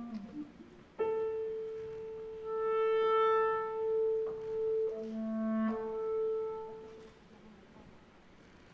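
Clarinets playing a classical piece, after a few soft piano notes. One clarinet holds a long note that swells and fades. A second clarinet joins with a lower note for a moment just past the middle.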